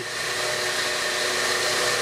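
A steady, even rushing noise with a faint high whine in it, holding one level throughout.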